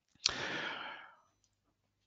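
A man's breath drawn through the mouth between sentences, lasting under a second, with a small mouth click as it begins.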